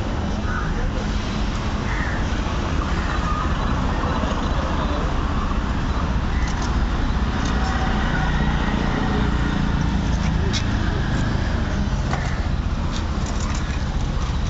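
Steady street traffic rumble with indistinct voices and a few light clicks.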